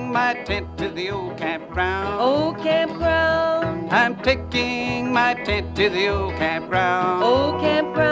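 Old-time country music played on banjo and guitar, with a steady bass note about once a second under a sliding melody line.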